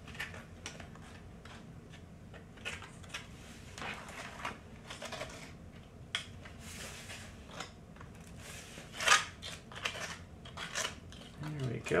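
Metal offset spatula scraping and tapping on a metal baking sheet while spreading melted chocolate: irregular short scrapes and clicks, the loudest a little after nine seconds in.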